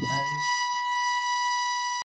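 A steady, high-pitched electronic tone, held at one pitch and then cut off abruptly, with a last voice saying good night over its first half second.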